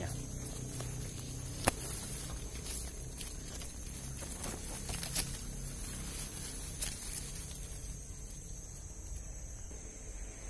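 Footsteps and rustling through dense leafy undergrowth, with a few sharp twig snaps, the loudest a little under two seconds in. Steady high-pitched insect calls run underneath.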